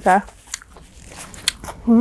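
Close-miked mouth sounds of a woman eating: a few sharp chewing clicks and smacks between a short spoken word at the start and a brief hum near the end.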